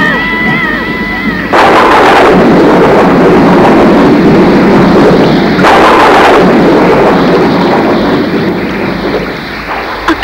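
Film sound effect of a thunderstorm: two loud thunder crashes, about a second and a half in and again just past the middle, each rolling off over a few seconds over steady heavy rain.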